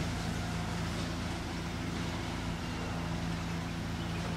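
Steady low hum of a distant engine over a constant background hiss, with no sudden sounds.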